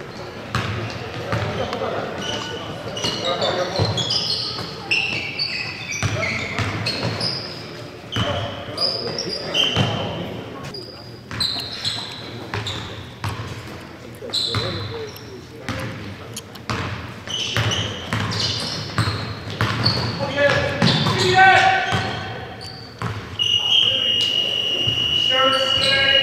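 Basketballs bouncing on a hardwood gym floor and sneakers squeaking in short, sliding chirps during play, with voices calling out in the echoing hall. A steady, high scoreboard buzzer starts just before the end.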